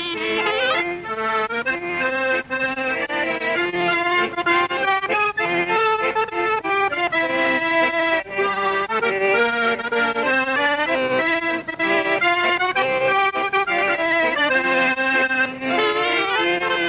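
Clarinet and accordion playing a lively liscio waltz.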